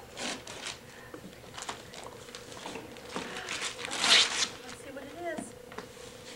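Gift-wrap paper being torn and crinkled off a present's box in a series of short rips, the loudest about four seconds in.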